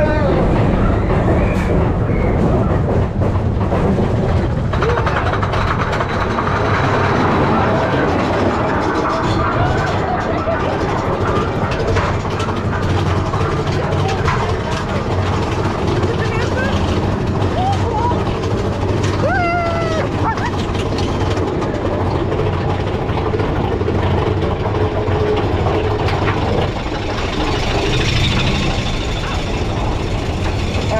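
Big Thunder Mountain Railroad mine-train roller coaster running along its track with a steady loud rumble and rush of wind on the microphone. Riders' voices and shouts come through over it.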